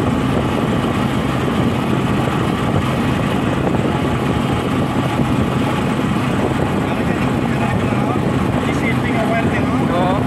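Steady engine and tyre noise heard from inside a moving vehicle's cabin as it drives along a concrete road.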